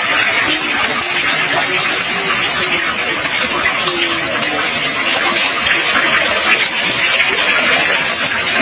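Water falling in thin streams from a bamboo wishing well's frame and splashing into the pool below: a continuous, even rushing.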